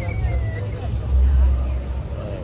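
Low street rumble on a handheld phone's microphone, swelling briefly about a second in, with faint voices in the background.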